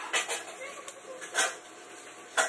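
A spoon scraping and clicking against the inside of a thin plastic cup as cooked strawberry is spread around its sides: a few short scrapes, the loudest about one and a half seconds in.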